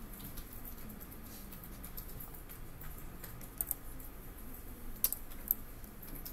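Computer keyboard keystrokes and clicks, sparse and light, with a few sharper clicks in the second half.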